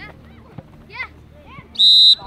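Referee's whistle: one short, loud blast near the end, after scattered shouts from players and spectators.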